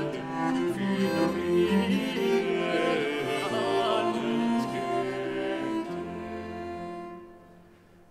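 A Renaissance consort of bass viol and a second viol with lute playing an instrumental piece, several parts moving note by note; the music dies away about a second before the end.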